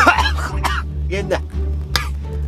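A man coughs while talking, with background music underneath.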